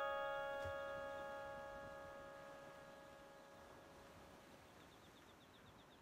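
Music box's final chord ringing out and slowly dying away as the piece ends. Within a few seconds only faint hiss is left.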